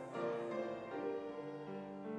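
Piano music: slow held chords, each note sounding and then giving way to the next.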